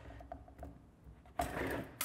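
Handling of a small plug and its cable on a plastic tower housing: faint light ticks, then a short rustling scrape about one and a half seconds in as the temperature sensor is plugged into its port.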